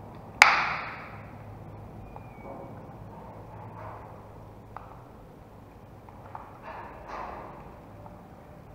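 A screwdriver driving the last screw into a plastic female mains plug. There is one sharp metallic click with a brief ring about half a second in, then faint small clicks and scrapes as the screw is turned.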